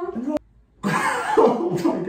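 A person's voice in an excited reaction: a short voiced sound ending in a click, then about a second in a loud, breathy vocal outburst without clear words.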